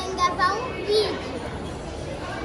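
Young girls' voices: short high-pitched vocal sounds in the first second, then quieter.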